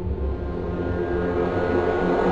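Dramatic film soundtrack: a low sustained drone with a swelling rush that builds to a peak at the end.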